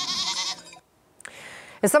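A goat bleating: one wavering call that stops a little under a second in.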